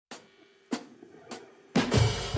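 Opening of a song on a drum kit: three sharp stick clicks about 0.6 s apart count in the beat, then the drums and band come in loudly near the end.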